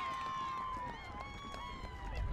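Field-side cheering and shouting after a try: several voices hold long, high calls that slowly fall in pitch, over outdoor background rumble.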